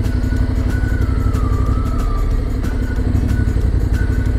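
Motorcycle engine running steadily, with a faint wavering melody of background music laid over it.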